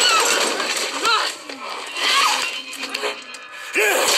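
Action film soundtrack heard through a screen's speakers: voices shouting "Sam! Run!" and a yell near the end, over music with clinking, crashing effects.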